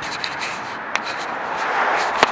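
Steady rubbing and scraping handling noise on a handheld camera's microphone as the camera is moved about, with a couple of faint clicks.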